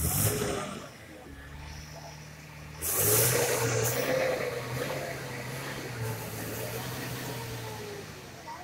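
Minibus engine running under load as the bus crawls over a rough dirt road. About three seconds in the engine is revved up hard and holds a steady, loud drone.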